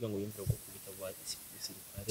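Quiet, broken speech from a man's voice, much softer than the talk around it, over a faint steady high hiss that comes in shortly after the start.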